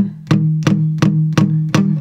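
Acoustic guitar, capoed at the third fret, strumming a C chord in even strokes, about three a second, with the chord ringing between strokes.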